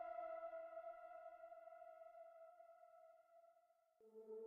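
A single sustained note of electronic background music, ringing like a ping and slowly fading away until it dies out near the end.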